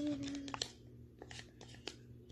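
A spoon scraping and tapping yogurt out of a small plastic tub into a bowl: a run of short scrapes and clicks, after a brief hum at the very start.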